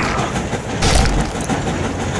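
A train running, with a steady rumbling clatter and a sharp crack-like burst about a second in.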